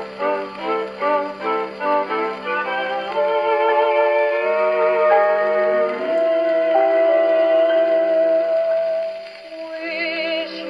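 HMV 130 acoustic gramophone with an HMV 5A soundbox playing a 1939 Decca 78 rpm shellac record: the instrumental introduction, short repeated notes giving way after about three seconds to long held notes with vibrato, with the singing voice just coming in at the end.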